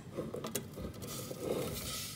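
Sliced shallots scraped off a wooden chopping board with a wooden spatula into a heated stainless-steel pot, the pieces landing in the pot, with a sharp knock about half a second in.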